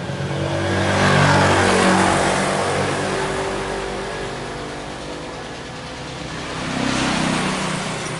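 Motor vehicles passing by: engine and road noise swelling to its loudest about a second in and fading over several seconds, then a second, smaller pass near the end.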